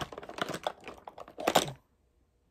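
Makeup containers being handled and knocking together as a foundation bottle is picked up: a rapid run of small clicks and knocks, loudest about one and a half seconds in, then stopping.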